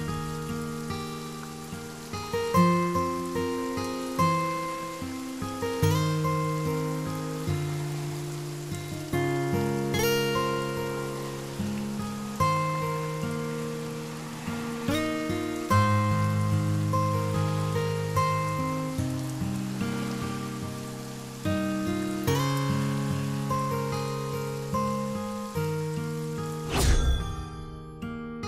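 Slow background music of plucked string notes, each struck and left to ring away, over a steady hiss of rain.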